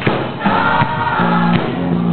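A gospel choir singing live, with hand claps on the beat about every three-quarters of a second.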